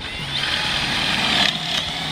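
Cordless drill boring a pocket hole into a wooden board held in a Kreg pocket-hole jig, the motor running under load with a steady high whine.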